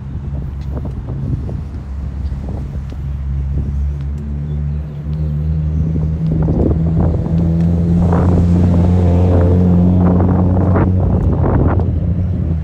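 A motor vehicle's engine running with a steady low hum, growing louder from about five seconds in and loudest a few seconds later.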